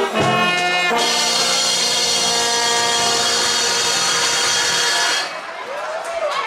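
Marching band brass section with trombones and trumpets playing a few short chords, then holding one long loud chord that cuts off abruptly about five seconds in, the ending of the piece; crowd noise and cheering rise as it stops.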